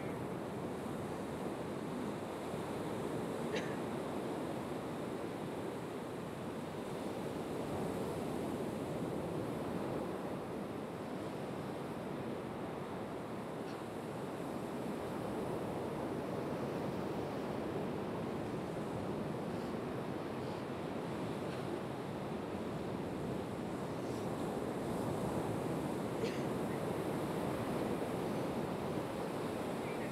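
Ocean surf washing onto a beach: a steady rushing wash that swells and eases slightly, with a few faint brief high sounds.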